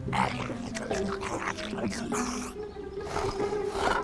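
Cartoon polar bear growling and grumbling angrily, over a backing of cartoon music.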